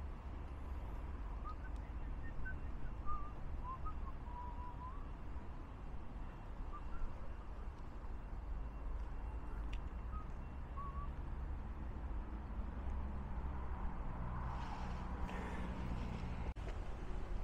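Steady low rumble of distant road traffic with faint, scattered bird chirps through the first ten seconds or so, and the noise swelling briefly near the end.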